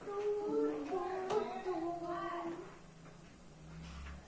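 A child's voice in a high sing-song for about the first two and a half seconds, then it goes quiet.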